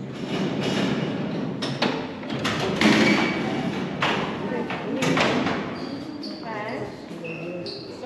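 Barred steel prison cell door opened by a lever-and-clutch control mechanism: a series of heavy metal clanks and thuds as the door slides open, the loudest about three seconds in, over the talk of people nearby.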